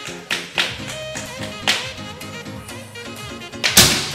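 Background music throughout; near the end, a single sharp, loud report from a Black Panther gejluk air rifle being test-fired.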